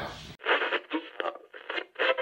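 Thin, tinny voice chatter as if heard over a radio, choppy and cut off at both the low and high end. It starts abruptly after a brief tail of the preceding talk and guitar music.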